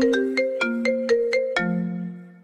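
Mobile phone ringtone playing a marimba-like melody of about eight quick notes, ending on a lower held note.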